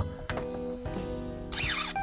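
Background music with steady tones, then about one and a half seconds in a short, high-pitched rising-and-falling motor whine as the Volpi KV500 battery-powered electronic pruning shears drive the blade shut through a small branch.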